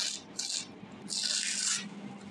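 Rustling and rubbing of a sanitary pad's thin nonwoven sheets and cotton layers as hands pull them apart. A short rustle comes about half a second in, then a longer one about a second in, over a faint steady hum.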